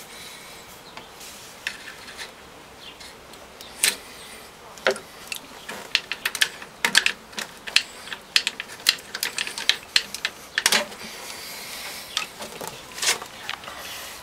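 Scattered sharp clicks and taps of hand tools and linkage parts as the shift cable is disconnected from a MerCruiser sterndrive engine's shift bracket. The clicks come thickest from about six to ten seconds in.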